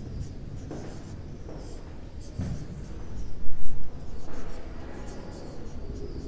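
Marker pen squeaking and scratching on a whiteboard in short strokes as words are written, with a brief louder low-pitched sound about midway.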